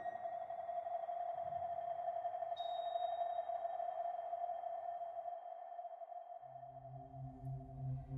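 Steady electronic tone from a film soundtrack, sonar-like. A faint higher tone joins about two and a half seconds in, and a low synth drone comes in near the end.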